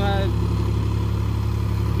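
Farm tractor's diesel engine running steadily as a low, even hum while it pulls a harrow through a flooded paddy field.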